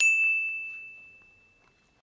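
A single bell ding: one bright strike that rings out and fades away over about a second and a half. It marks one more click of a hand tally counter.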